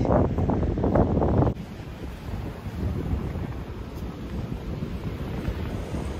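Wind buffeting the microphone, with the wash of surf behind it. It is louder for the first second and a half, then drops suddenly to a quieter, steady rush.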